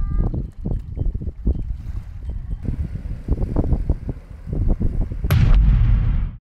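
Wind buffeting the microphone outdoors, heard as irregular low thumps and rumble. Near the end there is a sharp knock followed by a louder low gust.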